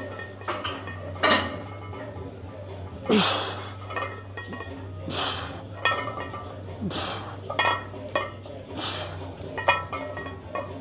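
Close-grip bench press reps with an iron-plate-loaded barbell: a forceful breath or grunt with each rep, about every two seconds. The plates and bar clink metallically in between, over a steady low hum.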